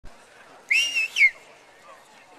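A loud two-part human whistle, likely from a spectator: a held note about two-thirds of a second in, then a quick downward slide.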